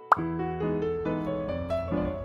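Background music with keyboard-like notes, broken just after the start by one short, loud plop-like sound effect, after which the tune carries on with fuller, sustained notes.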